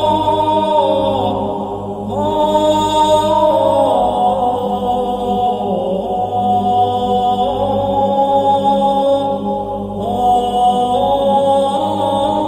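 Slow choral chant: voices holding long notes that step to new pitches every couple of seconds, with short breaks between phrases, over a steady low drone.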